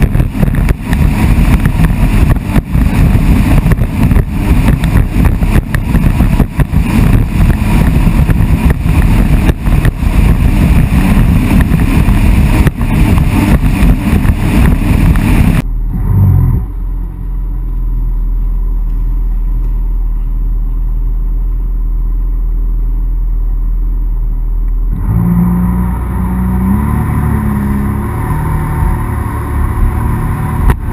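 Jet ski running flat out over open water, with loud gusting wind and spray buffeting the microphone. About halfway through, the sound suddenly drops to a muffled low rumble. Near the end the engine note comes back and rises.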